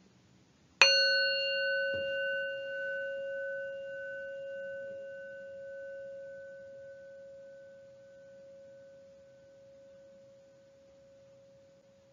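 Meditation bell struck once about a second in. Its low tone rings on steadily while the higher overtones fade away over several seconds.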